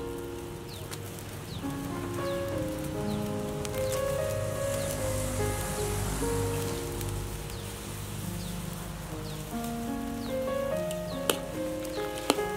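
Background music, a slow melody of held notes, over the steady bubbling of soup at a rolling boil in a metal wok. A single metal clink sounds near the end, as a ladle goes into the pot.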